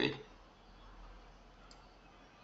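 A single soft computer mouse click near the end, over faint room noise.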